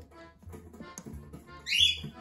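Cockatiel giving one short, loud chirp near the end, over background music with a steady beat.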